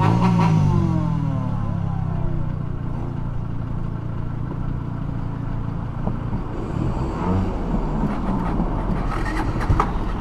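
Single-cylinder dual-sport motorcycle engines idling steadily. About two-thirds of the way through, a passing train adds a rushing noise over the idle.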